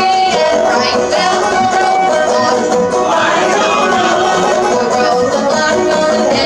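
Live acoustic string band playing a lively tune: banjo, fiddle and guitar together.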